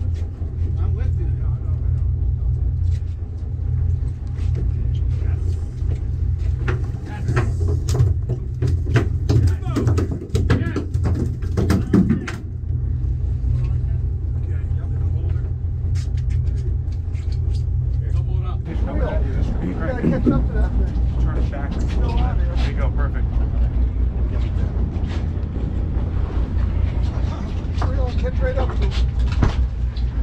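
A charter boat's engine running steadily under deck activity, with a spell of clattering knocks between about six and twelve seconds in and indistinct voices from about two-thirds of the way in.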